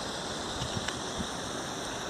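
Steady splashing of a pond fountain's spray falling back onto the water.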